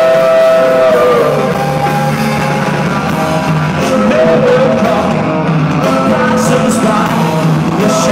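Live rock band playing loud, with a man singing over electric guitar and drums. A long held vocal note ends about a second in, and a moving sung melody follows.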